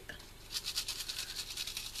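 Sequins and small plastic gems rattling inside the clear window of an egg-shaped shaker card as it is shaken by hand: a quick, steady rattle of about ten ticks a second, starting about half a second in.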